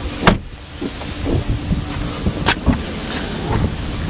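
A sharp click shortly after the start as the Chrysler 200's trunk release is pressed, then steady background noise with a couple of fainter clicks and handling sounds near the middle.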